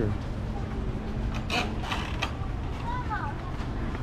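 A few sharp metallic clicks and clanks about one and a half to two seconds in, as a gate latch is worked, against steady outdoor background noise.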